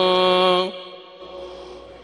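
Muezzin's voice calling the adhan over the mosque's loudspeakers, holding a long ornamented note with a wavering pitch that cuts off about two-thirds of a second in. The echo dies away into faint background sound.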